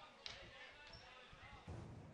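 Near silence: faint background noise with a few faint, brief sounds.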